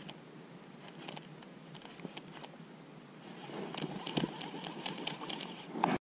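Faint open-air lake ambience with scattered light clicks and rustles of handling, growing busier in the second half, and two short high bird chirps, about half a second in and about three seconds in.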